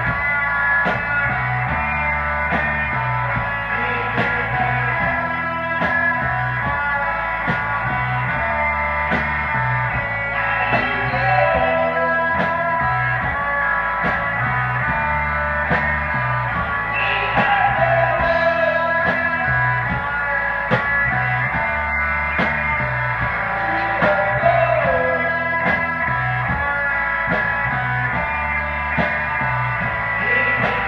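Rock band playing live: electric guitars, bass and drums on a steady beat.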